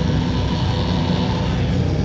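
Heavy rock band playing live through a club PA: a loud, steady, droning wall of distorted guitar with no clear drum beat.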